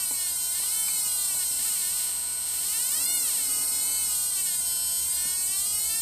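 High-voltage flyback transformer and spark gap buzzing steadily with a hiss. Faint whining tones glide up and down as the flyback's drive frequency is swept, most clearly a rise and fall about halfway through.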